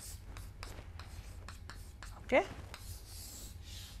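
Chalk writing on a chalkboard: a string of short taps and scratches as symbols are written, with a longer scrape near the end. A brief vocal sound comes about halfway through.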